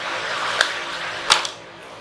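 A person's breathy exhale lasting about a second and a half, with two faint clicks near the middle.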